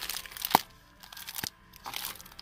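Cellophane packaging of a card pack crinkling as it is handled, with two sharp clicks about a second apart.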